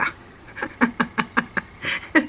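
A woman laughing in a quick run of short, breathy pulses, about five a second, with an in-breath near the end.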